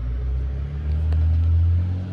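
Low, steady rumble of a motor vehicle's engine, getting louder about halfway through.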